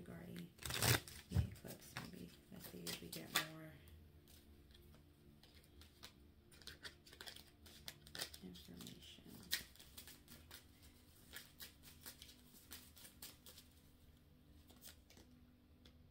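A deck of tarot cards being shuffled and handled by hand. Crisp riffles and clicks are loudest in the first three seconds or so, then softer scattered card clicks follow.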